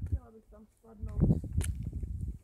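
Faint voices talking. From about a second in, a loud low rumble on the phone's microphone, with footsteps on a dirt forest path.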